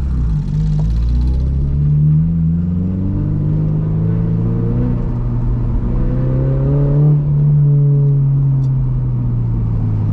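2022 Toyota GR86's 2.4-litre flat-four engine heard from inside the cabin under hard acceleration through an autocross course, its pitch rising, holding and falling with the throttle. There are brief dips about half a second in and about seven seconds in, then it climbs again.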